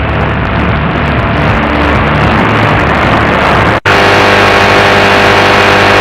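AM medium-wave reception on a TEF6686 radio tuner: loud static and noise with a low buzzing hum while it sits on weak channels. About four seconds in, the sound drops out for an instant as the tuner steps to another frequency, then comes back as steady hiss with a buzzing whine.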